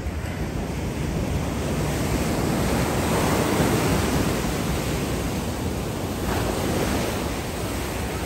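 Ocean surf breaking and washing up a sandy beach, a steady rush of water that swells loudest about three to four seconds in.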